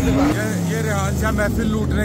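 A car engine running: its note drops back after a rev and settles into a steady idle, with people talking over it.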